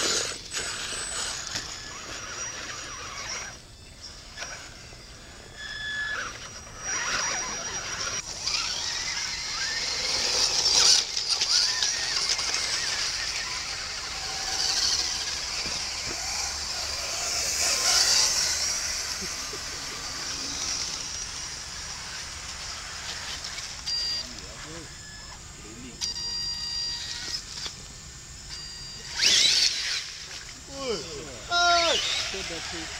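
Electric motors and geartrains of scale RC crawler trucks whining as they drive through mud, rising and falling with the throttle, with voices talking in the background.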